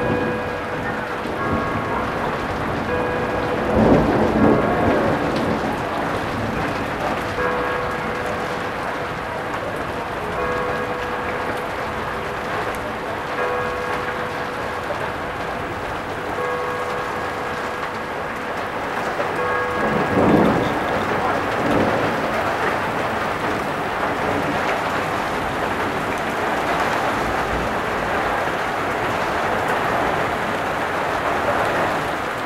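Heavy thunderstorm rain pouring steadily, with two rolls of thunder, one about four seconds in and another about twenty seconds in. The rain grows heavier in the last third.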